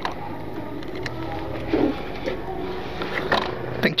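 Yamaha Factor 150's single-cylinder engine idling steadily as the motorcycle is brought to a stop, with a couple of short clicks near the end.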